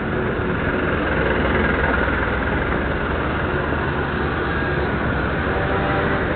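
Street traffic noise dominated by a motor vehicle engine running steadily, a low even rumble with no sudden events.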